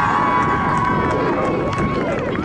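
Spectators shouting during play, one voice holding a long high call over several other voices.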